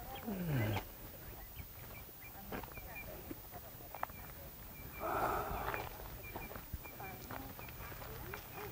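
A group walking along a gravel path: scattered footsteps and faint voices, with one voice sliding steeply down in pitch in the first second and a short rough noise about five seconds in. Faint short high chirps repeat in the background.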